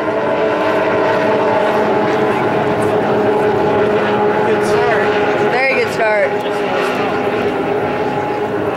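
A pack of D Stock Hydro racing outboards, two-stroke engines held at high revs, making a steady multi-toned whine as the hydroplanes race past. A short voice cuts in briefly about five and a half seconds in.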